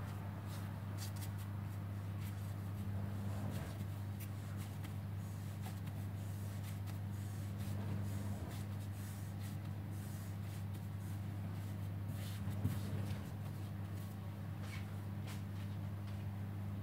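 Hands working and tightening a ball of sourdough on a floured stone countertop: soft, irregular rubbing and shuffling, over a steady low hum.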